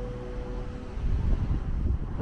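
Wind buffeting the microphone in low, rumbling gusts that grow loudest in the second half. A held note of soft background music fades out in the first half.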